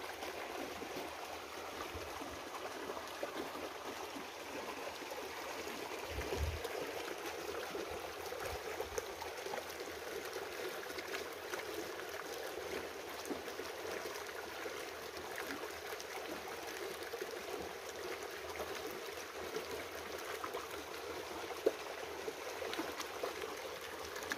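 Steady rush of running stream water, even and unbroken, with a brief low knock about six seconds in.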